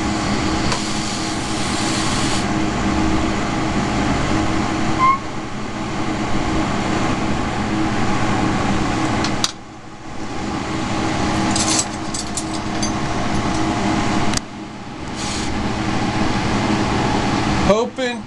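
Lampworking bench torch burning steadily: an even rushing hiss with a low hum under it. It drops away briefly twice, a little past halfway and again about three quarters in, with a few light clicks between.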